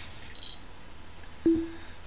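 Two short electronic cues from the Zello push-to-talk app: a brief high beep about a third of a second in, as the incoming voice message ends, then a click with a short, lower tone about a second and a half in, as the talk button is keyed to transmit.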